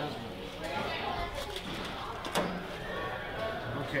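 Soft, wordless murmuring voices with a few sharp clicks of translucent plastic magnetic building tiles being handled and set against each other, the clearest click a little past halfway.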